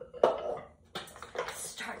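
Pottery dishes being handled on a table: a sharp clink about a quarter second in, then further knocking and clatter as the pieces are moved.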